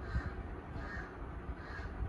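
A crow cawing repeatedly, three caws in quick succession, over a low steady rumble.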